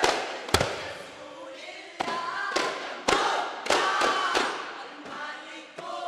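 Daf frame drums struck together by a group, single sharp beats at uneven spacing, about seven in all, the loudest just after the start. Between the beats a chorus of voices sings the duff muttu song.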